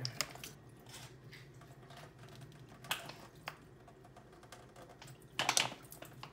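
A plastic water bottle screwed onto a Sawyer Squeeze filter is squeezed by hand, giving scattered sharp plastic clicks and crinkles, with a louder burst of crackling near the end.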